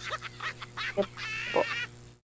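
Speech coming over a weak video-call line, garbled and warbling in short broken fragments: a sign of the signal dropping.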